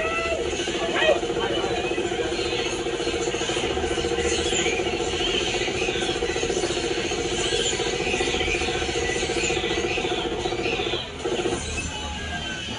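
Coin-operated game machine running with a steady drone that stops about a second before the end, over faint background chatter.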